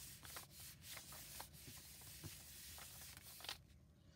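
Hands rubbing and pressing a sheet of cardstock down onto an inked rubber stamp, a faint swishing of skin on paper that transfers the stamped image. The rubbing stops shortly before the end.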